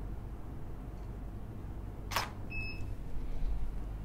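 Nikon D750 DSLR shutter firing once: a single sharp click about halfway in, followed shortly by a brief high beep.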